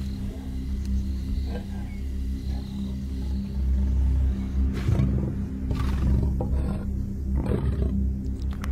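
Lions growling while mating, the growls coming in from about halfway through, over background music with a steady low drone.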